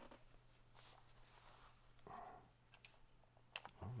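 Faint clicks and rustles of a tape measure being handled and hooked onto a compound bow's axle, with one sharp click near the end, over a low steady hum.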